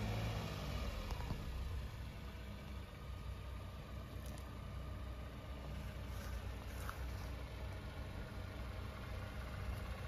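Tata Nexon's engine running with a steady low hum.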